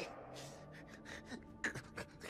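A person gasping and breathing hard in a few short, sharp breaths, the sharpest a little past the middle.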